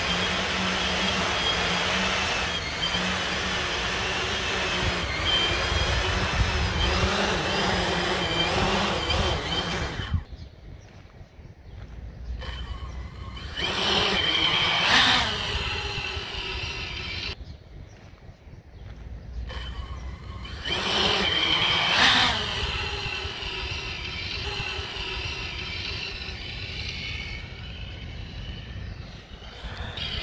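X-class FPV racing quadcopter's brushless motors and propellers running with a steady, many-pitched whine. The sound turns duller and quieter about a third of the way in. It swells and falls in pitch as the drone passes close twice in the second half.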